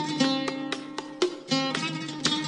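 Instrumental music played on a plucked string instrument: a run of picked notes, about three to four a second, each with a sharp attack that rings on.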